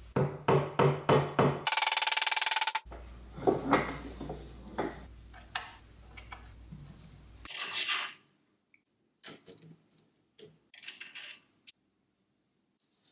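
Sharp taps and clicks of hand tools and small parts handled on a wooden workbench, with a run of quick knocks at the start and a brief fast rattle about two seconds in. Fainter small clicks follow as a rubber seal and washers are fitted onto a threaded rod.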